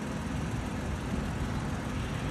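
Steady low hum of a motor vehicle's engine, over outdoor background noise.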